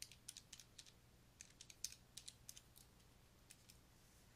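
Faint, quick clicks of calculator buttons being pressed to enter a calculation, in two short runs, with a couple more near the end.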